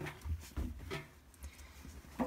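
Clothes being tossed into the drum of a front-loading washing machine: a few faint, soft rustles and thuds in the first second, then almost nothing.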